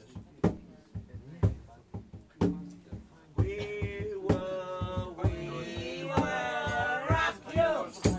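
A tambourine struck in a steady beat about once a second. From about three seconds in, a voice sings long held notes over it, wavering near the end.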